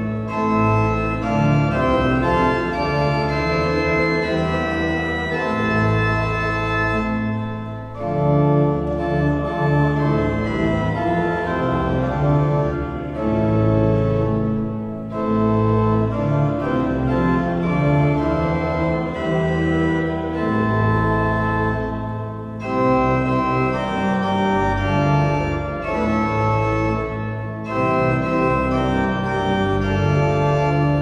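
Cathedral pipe organ playing a hymn tune in sustained full chords, phrase by phrase, with short breaks between phrases about every seven seconds.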